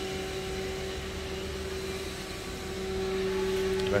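Steady hum of workshop machinery, a few constant tones over a low rumble and a haze of noise, with a couple of faint ticks near the end.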